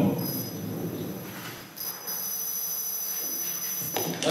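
Handling noise from a handheld microphone on a PA as it is passed between speakers, with a faint steady high-pitched ringing tone through the PA from about halfway in and a sharp click near the end as it is picked up.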